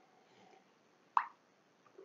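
A person drinking from a mug, with one short gulp or plop about a second in.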